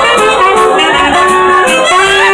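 Live huapango band playing loudly, with a saxophone carrying a sliding melody over the accompaniment.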